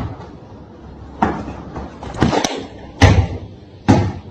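A series of loud, sharp thumps, about one a second, over faint background noise.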